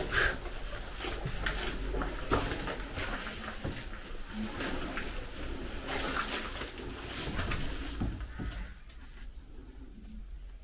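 Footsteps and scuffs on a debris-covered floor with rustling of clothing and a backpack, broken by irregular knocks and crunches; it quietens near the end.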